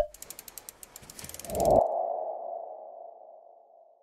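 Logo-animation sound effects: a sharp click, a quick run of fast ticks, then a single ringing tone that swells about a second and a half in and fades away slowly.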